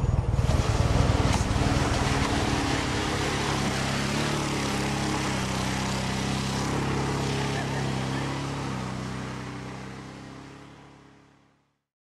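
A pickup truck's engine revving hard and steadily as it pushes through deep mud. The drone fades out near the end.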